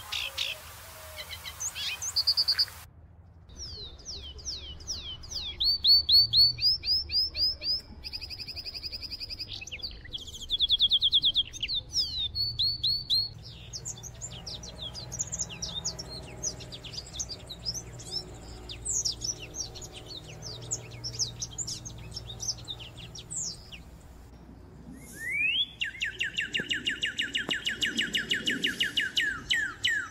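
Songbirds singing: a succession of different chirps, trills and fast runs of repeated notes, switching abruptly from one song to another several times.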